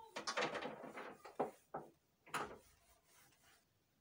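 Short scraping, rubbing and knocking sounds of a TV cabinet being cleaned by hand, in about four bursts: a longer rub in the first second, a sharp knock about a second and a half in, and two shorter scrapes after it.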